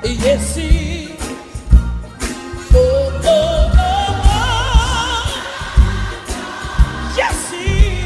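Old-school Black gospel song: a lead singer holds long, climbing notes with wide vibrato over a band accompaniment with a regular beat.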